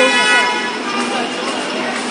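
A vehicle horn sounding one steady blast that stops about half a second in, followed by voices chattering over street traffic.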